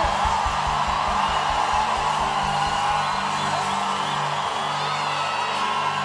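Live church band playing celebration music, with held keyboard chords over a fast low drum beat that fades out about four and a half seconds in. The congregation cheers over it.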